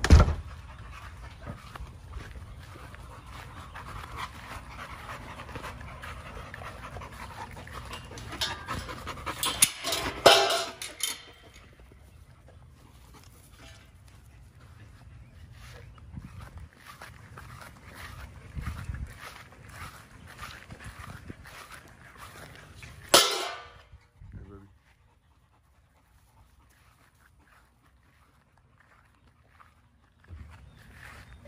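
A bully-breed dog panting, with a sharp knock right at the start, a loud clattering burst about ten seconds in and another past twenty seconds. The last few seconds are near silent.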